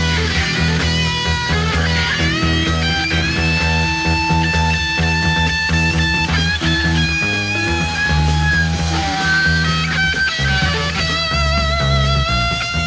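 Psychedelic rock jam from a live recording: an electric guitar lead holding long, wavering notes over a steady bass line and band.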